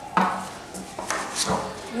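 Large printed paper sheets being turned and handled: a few sudden rustles and taps.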